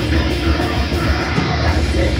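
Live heavy metal band playing loud: distorted electric guitars, bass guitar and drums in one dense, unbroken wall of sound, heard from within the audience.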